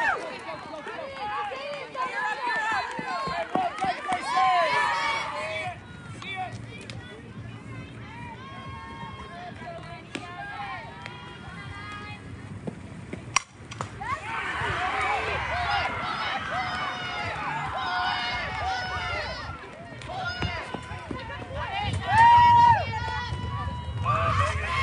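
Players and spectators at a softball game shouting and cheering, many voices at once. About thirteen and a half seconds in, a single sharp crack of a bat hitting the ball is followed by a fresh burst of cheering.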